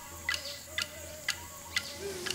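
Clapsticks struck in a steady beat, four evenly spaced sharp knocks about two a second, with a faint held wavering tone underneath.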